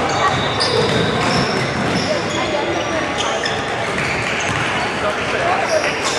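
Basketball game sounds on a hardwood court: the ball bouncing and sneakers squeaking in short, high chirps, over steady crowd and player chatter.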